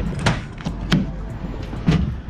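Three dull knocks about a second apart over a low steady rumble, the last one the heaviest.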